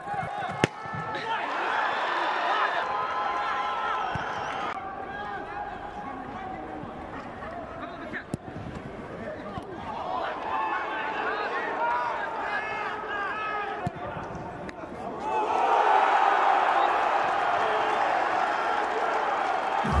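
Football stadium sound: players' shouting voices over crowd noise, with a sharp thud of a ball being kicked just after the start and a couple of fainter knocks later. About three-quarters of the way through, the crowd noise swells and stays loud, cheering a goal.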